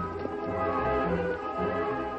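Orchestral music with strings playing sustained notes: a musical bridge marking a scene change in a radio drama.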